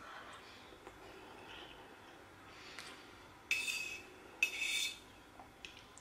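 Someone eating from a bowl with a fork: mostly quiet while chewing a mouthful, then two short hissy sounds, each about half a second, roughly three and a half and four and a half seconds in.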